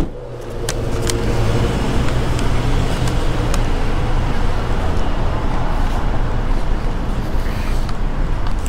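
Steady road-traffic and vehicle noise with a low engine hum, broken by a few faint clicks.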